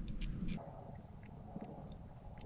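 Faint sounds of a man drinking from a plastic water bottle, with a few small clicks.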